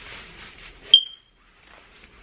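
Clothing rustling as tight pants are tugged up, then a single short, loud, high-pitched electronic beep about a second in. The sound drops out for a moment after the beep.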